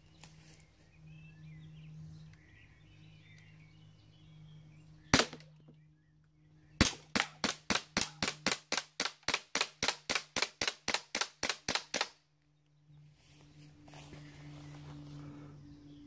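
CO2-powered blowback Luger P08 replica pistol firing: a single shot about five seconds in, then after a short pause a rapid string of about twenty shots at roughly four a second, until the gun is empty.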